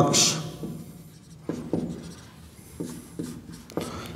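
Handwriting: a run of short, separate writing strokes on a surface in a small room.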